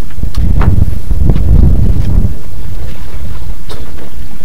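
Wind buffeting the microphone in gusts, a heavy low rumble that is strongest between about one and two seconds in, with a few light clicks.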